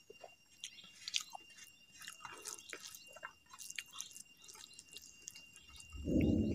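Faint wet clicks and smacks of close-miked chewing and of fingers squeezing soft food against a steel plate, scattered and irregular, with a thin steady high whine beneath.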